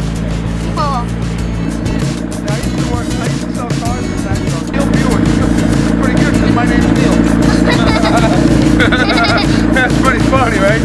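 Background music with a pulsing bass line and a singing voice, getting louder about halfway through.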